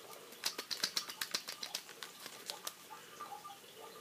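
Plastic blister packaging on a carded cat toy crackling and clicking as it is handled, a quick irregular run of sharp crackles in the first two seconds, then a few fainter ticks.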